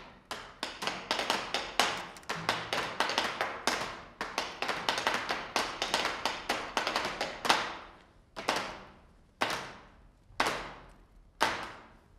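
Barrel drums struck with sticks: a fast run of sharp strikes for the first seven seconds or so, the loudest near its end, then single strikes about one a second.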